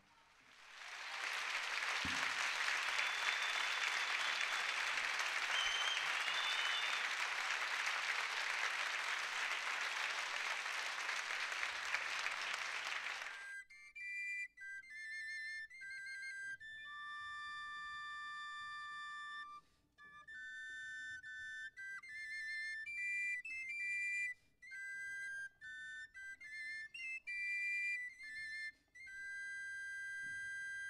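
Audience applauding, which cuts off suddenly after about thirteen seconds; then two small wooden flutes play a high, clear melody in short phrases, at times holding two notes together in harmony.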